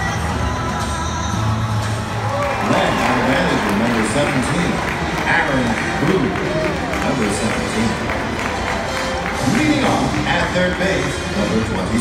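Music playing, joined about two and a half seconds in by a ballpark public-address announcer's voice introducing the starting lineup.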